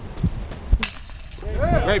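A sharp metallic clink that rings briefly on one high tone, followed by spectators calling out.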